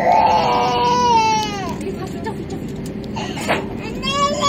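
A young child crying in the airliner cabin: one long loud wail that falls in pitch and dies away about two seconds in, with another cry starting at the end. Under it runs the steady hum of the cabin as the plane taxis.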